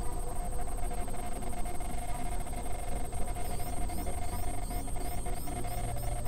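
Experimental electronic noise music: a steady mid-pitched tone held over a dense low rumble, with a fast, even ticking up high. From about halfway through, short high chirps repeat about three times a second.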